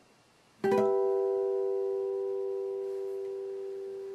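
Acoustic guitar natural harmonics at the 12th fret on the G, B and high E strings, plucked together once about half a second in. The three clear pitches ring on and slowly fade.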